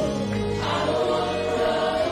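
Gospel worship music: a Roland keyboard and a drum kit playing, with a group of voices singing long, held notes.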